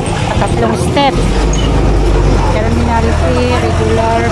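People talking over the steady low rumble of an idling vehicle engine, which comes in about a second in.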